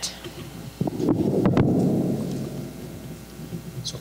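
A loud, muffled low rumble that starts suddenly about a second in, with a few sharp knocks in it, and fades away over the next two seconds.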